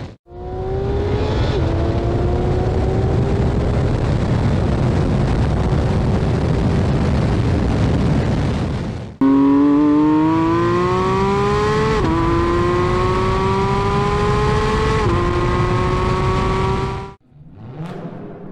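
2023 Porsche 911 GT3 RS's 4.0-litre naturally aspirated flat-six at full throttle, its pitch climbing through the gears with a sharp drop at each upshift of the seven-speed dual-clutch gearbox. There is one shift about a second and a half in, then two more after a cut to a louder recording right at the exhaust tips. It cuts off abruptly about a second before the end.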